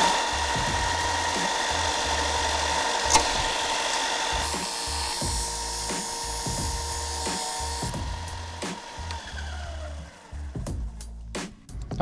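Bench belt sander running with a steady whine while a metal heat sink is pressed against the belt, grinding its fins off the heat pipes. Near the end the sander is switched off and its whine falls as it spins down.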